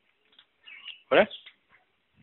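A toddler's voice: faint high-pitched babble, then one loud, short squeal with a sliding pitch about a second in.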